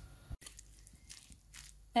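Faint crunching and squishing of a salad of shredded white and red cabbage, carrot and greens being stirred together with a thick sauce in a bowl.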